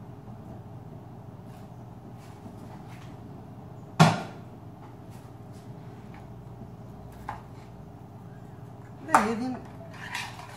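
Cookware knocking on a hard kitchen surface: one sharp knock about four seconds in and a lighter click later, as pieces of meat are handled over a round metal baking tray, over a steady low hum.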